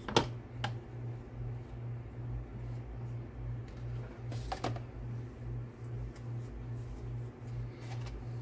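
Paintbrush dabbing and scrubbing paint onto textured paper-mache scales: faint taps and scratches, with a sharp click just after the start and another pair about halfway through. A steady, evenly pulsing low hum runs underneath.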